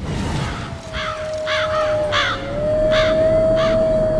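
Crows cawing, a string of harsh calls starting about a second in, over a single steady held tone that dips briefly in pitch midway.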